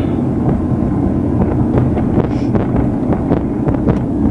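Road noise inside a moving car's cabin: a steady low rumble with many small knocks and rattles as the car rolls over rough, patched pavement.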